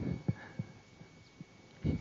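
A pause in a man's speech: a few faint, short low thumps and a faint steady hum, with his voice resuming just before the end.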